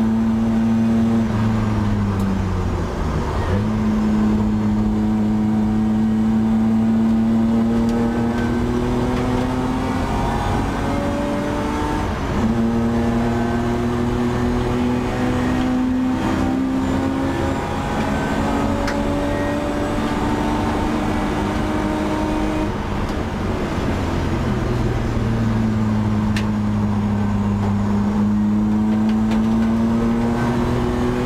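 BMW E30 320i race car's 2.0-litre straight-six engine heard from inside the stripped cabin, pulling hard with its pitch climbing under acceleration. It dips sharply about three seconds in and again after about twenty-three seconds as the car brakes and drops gears, then climbs again.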